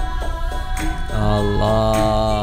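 Dikir barat: a group chanting in unison to a steady beat of hand claps, with a long note held from about a second in.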